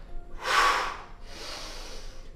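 A man breathing hard through a dumbbell row: a loud, forceful exhale through the mouth about half a second in, then a softer breath in.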